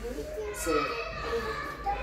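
People talking in a room, mixed with a small child's high-pitched voice.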